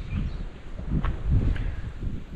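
Gusty wind buffeting the microphone, an uneven low rumble that rises and falls, with a couple of faint clicks about halfway through.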